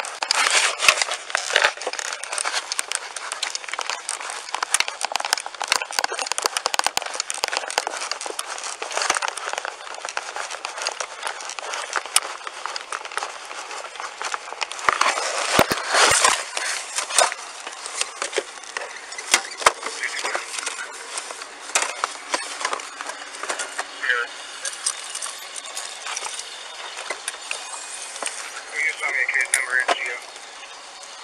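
Body-worn camera microphone picking up rustling, scraping and crackling as the wearer moves. Many sharp clicks are scattered throughout, with heavier bursts about a second in and around the middle, and indistinct voices underneath.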